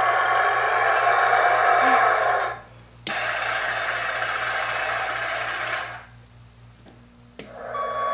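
Electronic truck sound effects from the Tonka Mighty Dump Truck ride-on's built-in speaker: two tinny, steady engine-noise clips of about three seconds each, with a short break between them. Right at the end, an interrupted reverse-warning beeping starts.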